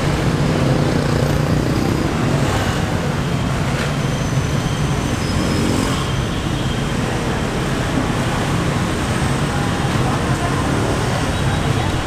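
Steady street traffic noise: a continuous hum of passing vehicles with no sudden events.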